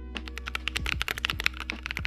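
Rapid computer keyboard typing, a quick run of sharp key clicks that stops near the end, over a short piece of music.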